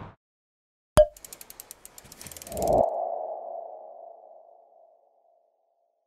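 Animated logo sting sound effect: a sharp click with a brief ping about a second in, a quick run of ticks, then a whoosh that rings into a single tone and fades away.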